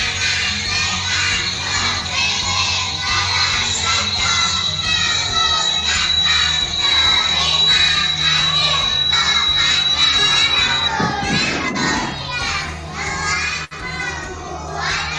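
A group of kindergarten children speaking in unison, reciting a thank-you in Indonesian ("Kami anak-anak TK Pertiwi Pelemrejo mengucapkan terima kasih").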